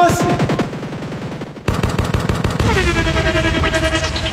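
Dancehall-style show intro drop: a shouted, echoing "Buss it!" followed by a rapid machine-gun sound effect lasting about a second and a half. Then a music beat cuts in with falling sweep effects.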